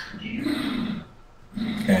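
One drawn-out vocal sound about a second long, its pitch rising and then falling, followed after a short pause by speech beginning.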